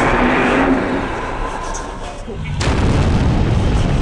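Loud, deep rumbling booms like explosions, a monster-attack sound effect. They ease off briefly about two seconds in, then a fresh blast hits suddenly about two and a half seconds in.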